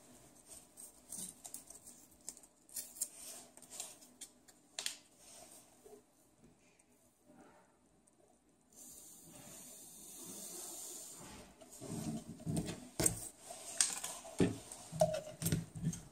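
Handling noises of paper reagent packets and plastic sample bottles: scattered rustles and small clicks as the packets are opened, a soft hiss for about two seconds near the middle as the powder is tipped in, then louder clicks and knocks of the bottles and caps near the end.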